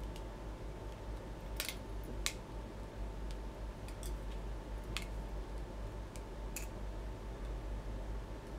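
Scattered small, sharp clicks and ticks from hands handling tools and materials at a fly-tying vise while winding a CDC dubbing loop, about half a dozen over several seconds. Under them runs a steady low electrical hum.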